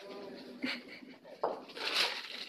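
A chicken making a low, steady call at the start, then a short spoken word.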